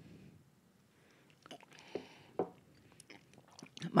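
Faint mouth sounds from people sipping and tasting whiskey: scattered small clicks and lip smacks in a quiet room, with a soft breath or sip in the middle.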